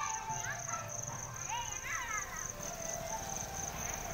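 Insects trilling in a steady high pulse, about five pulses a second, under a low background rumble. A few short rising-and-falling calls come over it about one and a half to two and a half seconds in.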